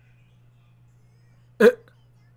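A man's single short, sharp vocal sound close to the microphone, a hiccup-like burst about one and a half seconds in, over faint background dialogue.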